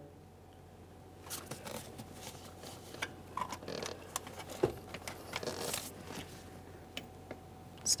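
Faint, irregular clicks and short scrapes of a 10 mm socket on a ratchet extension and gloved hands working on a mounting bolt in an engine bay.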